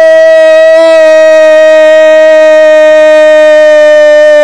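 Male commentator's goal cry: one unbroken, very loud "gooool" held at a steady high pitch for several seconds.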